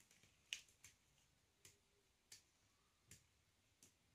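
Near silence broken by about six faint, irregular clicks and taps, the clearest about half a second in, from a paint-covered canvas being handled and tilted by a gloved hand.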